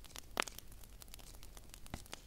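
Fingers handling a glitter-covered decorative egg up close: a few scattered light clicks and taps over a faint hiss. The sharpest click comes about half a second in and another near the end.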